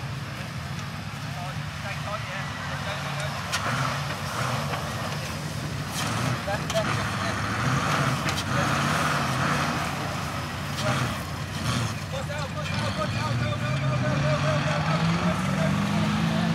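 Engine of a Land Rover-based off-road competition car running at low revs as it rolls across grass, rising in pitch near the end as it accelerates away.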